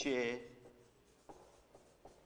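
Marker pen writing on a whiteboard: faint short strokes and taps against the board, coming after a spoken word trails off at the start.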